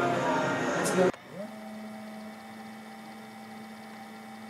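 Voices over music for about the first second, cut off abruptly; then a steady electronic hum that sweeps up in pitch and holds, a fast-forward transition sound effect.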